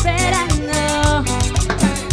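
Live Latin dance band music with a fast, steady beat: electric guitars, keyboard, drum kit and hand drums playing together.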